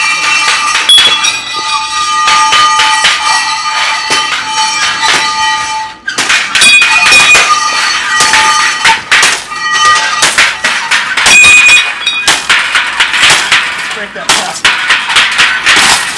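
Scrap metal being beaten as improvised noise music: a fast, dense clatter of strikes with ringing metallic tones. About six seconds in it breaks off, and heavier crashes follow as a metal pipe and a cinder block smash into a wire shopping cart.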